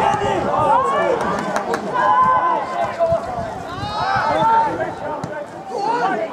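Several men's voices shouting and calling over one another during play on a football pitch, with a few short sharp knocks of the ball being kicked.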